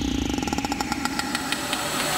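Electronic logo-intro sound effect: a rapid, even stutter of short pulses over a low rumble, building toward a hit.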